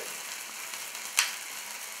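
Cake fountain sparklers hissing steadily, with one sharp click a little over a second in from a handheld lighter being struck to light a birthday candle.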